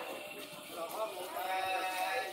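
Voices singing with a long held note near the end, over a background of crowd chatter.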